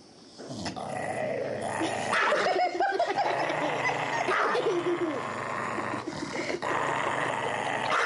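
A dog growling and snarling continuously, starting about half a second in, as it guards a rawhide bone from its own front leg and bites at it.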